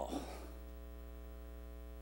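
Steady electrical mains hum in the sound system, a low buzzing drone that does not change. It is heard under the reverberant tail of the last spoken word, which fades out just after the start.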